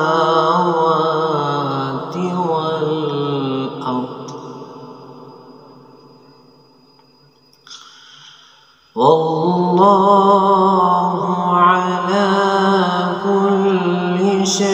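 A man's solo Quran recitation in maqam Bayat: a long, wavering melodic phrase is held and then fades away over several seconds. A brief soft sound falls in the lull about eight seconds in, and a new sustained phrase begins at full voice about nine seconds in.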